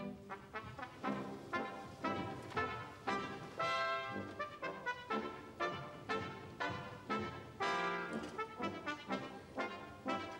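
Orchestral ballet music, brass to the fore, playing short accented notes in a quick, regular rhythm.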